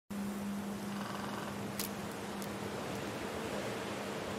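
Steady hiss with a low, even hum beneath it, broken by two short clicks a little over half a second apart near the middle.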